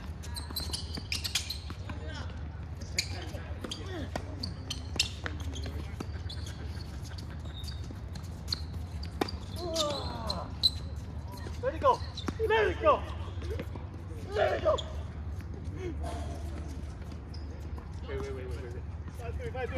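Tennis balls struck by racquets and bouncing on a hard court: a string of sharp pops, more frequent in the first half, with short shouted voices in the second half.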